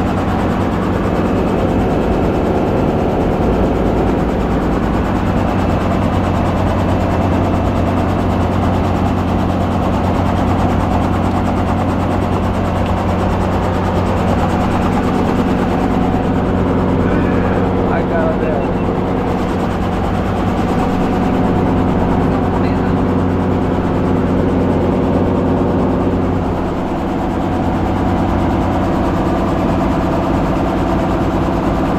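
Robinson R44 helicopter's Lycoming six-cylinder piston engine running steadily on the ground, warming up before flight. The level dips briefly near the end.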